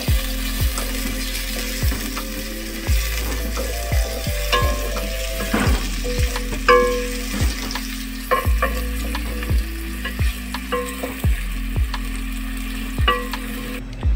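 Sliced onions sizzling as they fry in hot oil in a metal pot, stirred with a wooden spoon that knocks and scrapes against the pot about once a second.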